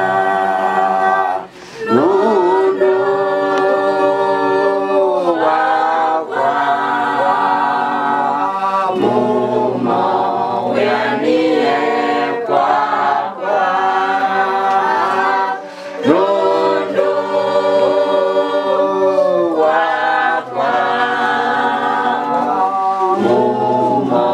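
A group of voices singing together unaccompanied, in long held notes that run in phrases of a few seconds with brief pauses between them.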